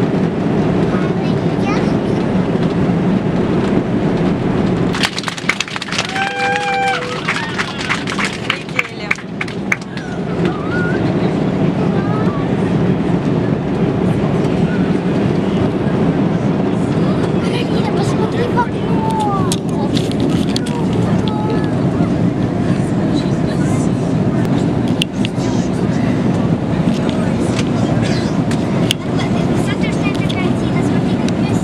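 Passenger aircraft cabin noise: a steady low drone with a murmur of voices. Between about five and ten seconds in there is a run of sharp clicks and a short falling two-note tone.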